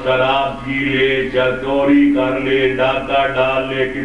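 A man's voice reciting in a melodic, chant-like delivery, holding long steady notes between phrases.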